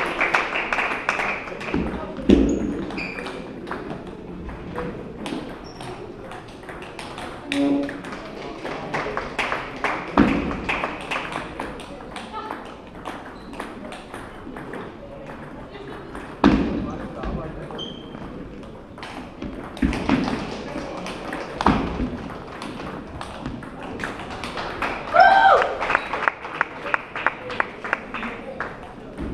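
Table tennis rallies: the celluloid ball clicking against bats and table in quick sharp strokes, over chatter and further ball clicks from other tables in a large hall. A short shout comes near the end.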